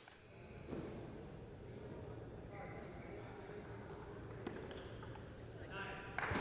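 Quiet sports-hall room tone with faint distant voices about halfway through, and a couple of light single taps.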